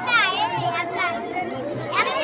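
High-pitched children's voices calling and chattering, with other people talking around them.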